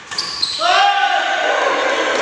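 A brief sharp hit, then a loud, drawn-out shout from a man's voice that echoes around a large indoor hall as a badminton rally ends.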